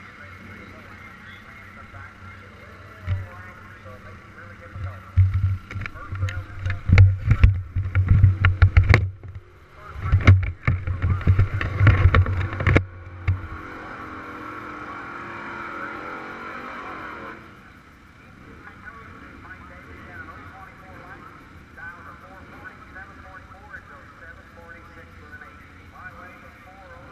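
Handling noise on the camera's own microphone: a run of heavy bumps and rubbing for about eight seconds as it is moved and fabric brushes over it, then a steady hiss for a few seconds before it settles.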